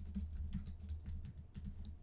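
Computer keyboard being typed on: a faint, quick, irregular run of keystrokes.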